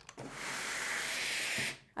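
Steam iron giving a steady hiss of steam for about a second and a half while pressing a fabric collar piece on a wooden tailor's pressing block.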